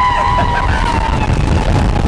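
Roller-coaster riders holding one long scream as the wooden coaster train plunges down a drop, the scream fading out a little over a second in. Underneath, a loud low rush of wind on the microphone and the train running on the track.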